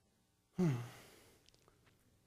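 A man sighs once about half a second in: a breathy exhale with voice, falling in pitch and fading away.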